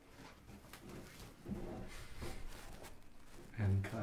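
A man's low laughter and soft, wordless vocal sounds, with the loudest laugh just before the end.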